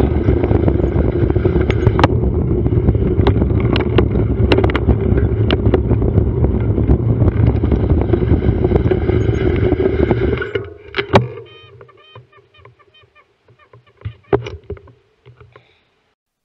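Wind and road rumble on a bicycle-mounted camera's microphone while riding, with scattered sharp clicks and rattles; the noise drops away suddenly about ten seconds in as the bike slows to a stop. After that, faint rapid ticking and a few knocks.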